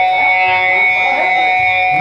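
Live band music led by electric guitar, with several notes held and ringing steadily.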